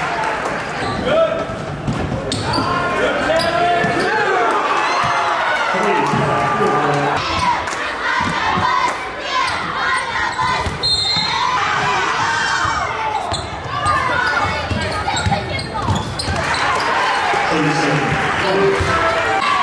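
Basketball game in a large gym: the ball bouncing on the hardwood court amid players' and spectators' voices, all echoing in the hall.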